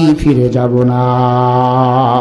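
A preacher's voice through a microphone, breaking from impassioned speech into one long chanted note that holds at a steady pitch, starting a moment in.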